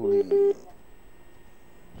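Two short telephone beeps in quick succession on a phone-in call line, each a steady mid-pitched tone lasting about a fifth of a second, then only faint line hiss.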